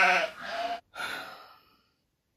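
A comic bleating sound effect of a goat or sheep: one long, steady bleat that ends just under a second in, then a shorter one that fades away.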